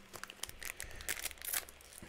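Light, scattered crinkling of a Weiss Schwarz booster pack's wrapper as a pack is handled and taken from the open box.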